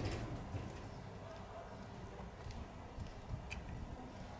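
Outdoor street ambience: a low, steady rumble with scattered light clicks and taps, and a short high chirp about three and a half seconds in.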